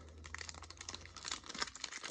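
Foil wrapper around a stack of trading cards crinkling as it is picked up and handled, a run of small, quick, faint crackles and ticks.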